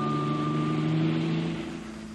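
Small car's engine running steadily as it drives off, fading out near the end.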